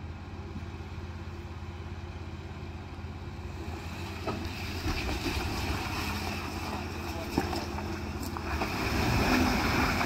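Jeep Wrangler Rubicon's engine running low and steady, then working harder under load from about four seconds in as the Jeep crawls up a muddy, rocky climb, loudest near the end.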